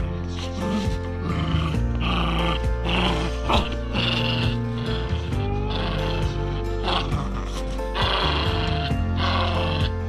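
Background music with a steady beat, over a beagle growling in repeated bursts as it tugs on a rubber toy.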